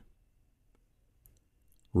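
Near silence in a pause of a spoken reading, broken by a faint click or two about a second in; the reader's voice starts again at the very end.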